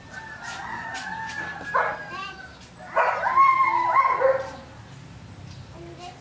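Domestic cats yowling in an angry standoff: a long, slowly falling wail, then a louder, wavering yowl about three seconds in that dies away after a second and a half.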